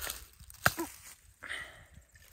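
Lettuce leaves being picked by hand: one sharp snap about two-thirds of a second in as a leaf stem breaks off, then faint rustling of leaves.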